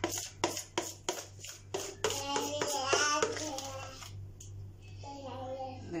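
Metal spoon scraping and knocking cake batter out of a plastic mixing bowl, about three knocks a second over the first two seconds. A voice, like a child's, comes in after that and again near the end.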